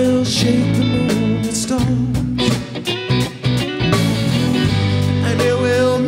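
Live rock band playing: electric guitars, bass guitar and a drum kit, with the loudness dipping briefly about halfway through.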